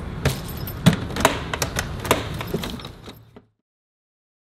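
A handful of short clicks and knocks over room noise, fading out and cutting to silence about three and a half seconds in.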